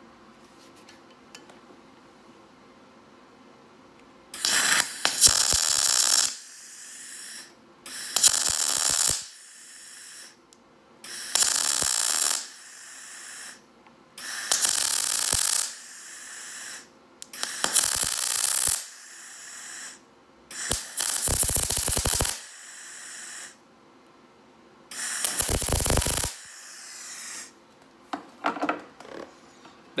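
MIG welder tacking a nut onto a broken exhaust bolt in an aluminium cylinder head, turned up for deep penetration: seven short bursts of arc crackle, each a second or two long and a few seconds apart, starting about four seconds in.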